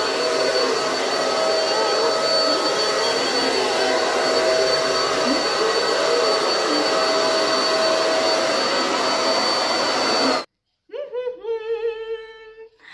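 Household vacuum cleaner running steadily with a high whine. The motor cuts off suddenly about ten seconds in.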